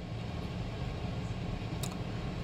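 Steady low background hum with no speech, and one faint tick near the end.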